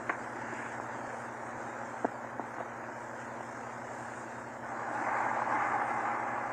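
Steady surface hiss and hum of a 1929 Vitaphone sound-on-disc record, with a few sharp clicks about two seconds in; the hiss grows louder about three-quarters of the way through.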